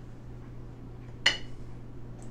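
A metal measuring spoon clinks once against a ceramic bowl, a sharp tap with a short ring, about a second in, as cornstarch is tipped in. A low steady hum runs underneath.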